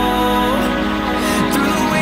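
Background music: a slow, soft song with held tones over sustained low notes and a gliding melody line.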